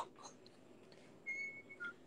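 A faint, short, high steady whistle-like tone about a second and a half in, followed at once by a brief lower note.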